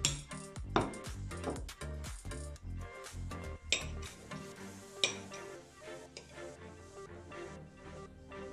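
Metal spoon clinking and scraping on a small ceramic plate as a child scoops soft gelatin, with a handful of sharp clinks, the loudest just under a second in, near four seconds and at five seconds, over background music.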